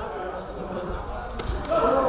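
Voices calling out across a large, echoing sports hall during a kickboxing bout, with dull thuds underneath. A sharp smack comes about one and a half seconds in, followed by a louder shout near the end.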